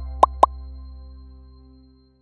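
Three quick, upward-sweeping pop sound effects about a quarter second apart, over a held chord of end-card jingle music that fades out.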